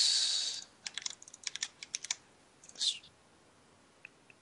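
Keystrokes on a computer keyboard: a quick run of clicks lasting about a second, after a short breathy hiss at the start, with another brief hiss near the end of the typing.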